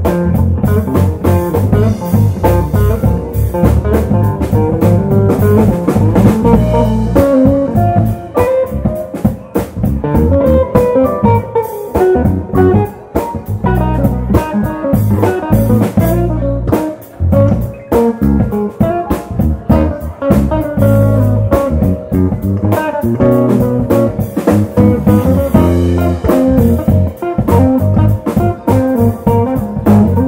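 Live instrumental groove band: a hollow-body electric guitar playing a melodic line over electric bass, drum kit and keyboards. The heavy low end drops away for a few seconds near the middle before coming back in.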